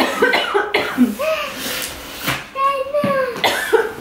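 A toddler's voice babbling and vocalizing in high, gliding tones, with a short cough in between.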